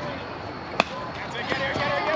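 A youth baseball bat hitting a pitched ball: one sharp crack about a second in, with spectators' voices around it.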